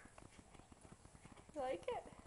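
Horse mouthing and nibbling at a lace-up shoe on the ground: a run of faint, quick little clicks and knocks of lips and teeth against the shoe.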